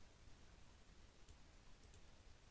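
Near silence: faint steady hiss with two or three faint computer mouse clicks in the second half.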